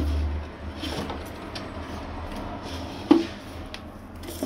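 A hand handling a wooden nest box inside a wire cage: small wooden knocks and rubbing, with one sharp knock about three seconds in.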